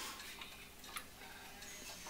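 Mechanical pendulum clock ticking faintly, with sharp ticks about a second apart.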